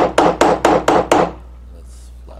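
A snap-fastener setting punch struck in quick, even blows, about four a second, stopping a little over a second in. The punch is riveting the fastener's cap onto its stem through thick leather, over a curved anvil.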